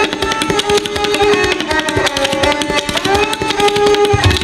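Tabla playing a fast, dense dhir-dhir rela. A sarangi plays a repeating melody above it in held bowed notes that slide between pitches.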